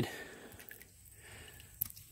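Faint background hiss, with one short sharp knock near the end as a wet wooden board is set against another board.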